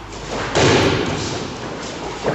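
A judoka thrown onto a padded judo mat lands with one heavy thud about half a second in, and the sound fades over the following second.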